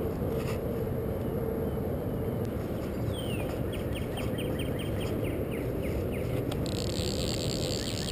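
Outdoor ambience by a pond: a steady low background rumble, a bird call with a falling note followed by a quick run of repeated notes about three seconds in, and a high, steady insect buzz that comes in near the end.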